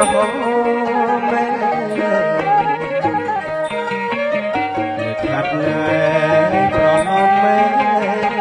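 Live Khmer traditional wedding music (pleng boran) from a small band: a wavering melody sung over the instruments, played continuously.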